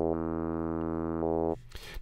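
A held synthesizer note from the u-he Zebra CM plugin, played through a formant filter that a user-drawn stepped LFO shifts in small steps, changing its vowel-like colour. The note stops about one and a half seconds in.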